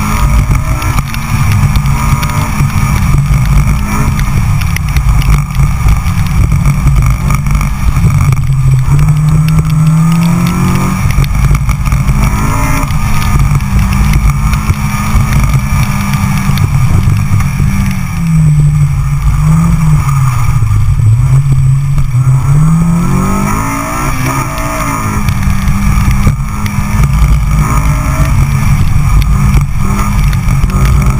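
Sports car engine driven hard through an autocross course, its note falling as the driver lifts or brakes and then climbing again on the throttle, twice in the run, over a heavy low rumble.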